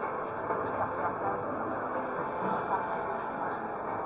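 Casino floor background music over a steady, dense din of the room, with short scattered electronic tones.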